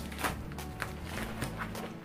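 Pink plastic poly mailer envelope being torn open and handled, its plastic giving a few short, sharp crackles.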